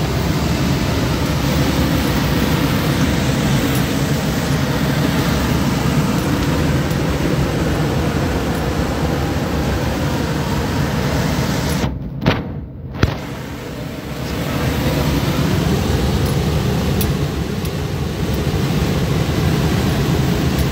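Steady road and engine noise inside a moving vehicle's cab while driving along an open highway. About twelve seconds in, the noise drops briefly and there are two sharp clicks.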